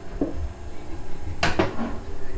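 Sliding glass door and its frame being tried by hand: a light knock, a low rumble, then a sharp rattling clatter about one and a half seconds in.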